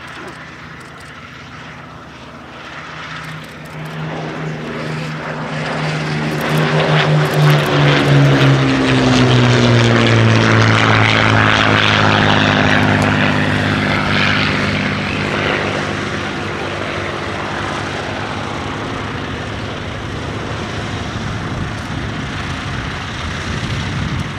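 Westland Lysander's Bristol Mercury nine-cylinder radial engine and propeller running at power. The sound grows louder to a peak about halfway through and drops in pitch as the aircraft passes, then runs on steadily.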